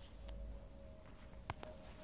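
Handling noise from a phone camera being moved around: a low rumble at the start and a sharp click about one and a half seconds in, over a faint steady hum.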